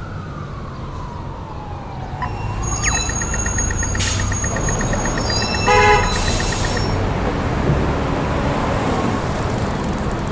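Steady low rumble of a campervan driving along a road. Over it, a whistling tone slides down and back up over the first few seconds, and short tones and clicks follow a few seconds in.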